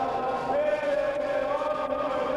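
Large group of voices singing a capoeira roda chorus in unison, held notes that step to a new pitch a couple of times.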